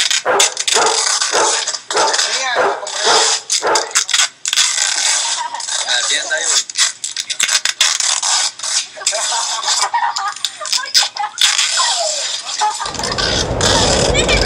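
Tinny phone-speaker playback of a commotion: indistinct voices with a dog crying out among them. A steady low noise comes in near the end.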